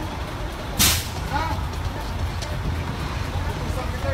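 A truck engine idling with a steady low rumble beside the cab. A short, sharp hiss cuts in just under a second in and is the loudest sound here.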